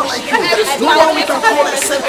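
Several voices praying aloud at the same time, overlapping one another.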